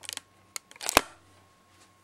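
A quick run of sharp clicks, a single click about half a second later, then a louder cluster of clicks ending in a knock about a second in: handling noise, as of a hand on the recording equipment.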